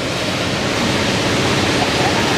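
A steady, loud rushing hiss spread across the whole range, like blowing air, growing slightly louder.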